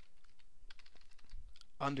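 Computer keyboard being typed on: a quick, irregular run of key clicks as a file name is entered.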